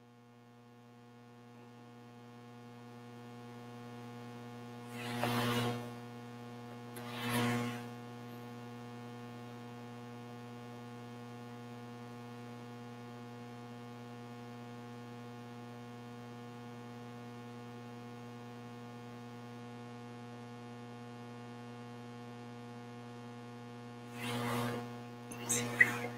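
Steady electrical mains hum with a ladder of overtones, growing louder over the first few seconds and then holding level. Two brief soft rushes of noise come about five and seven seconds in.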